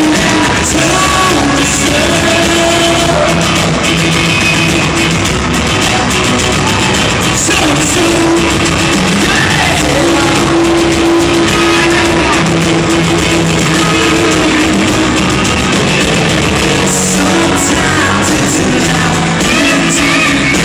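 Live country-rock band playing loudly in a large arena, acoustic and electric guitars with a male lead vocal, heard through the hall's echo from the crowd.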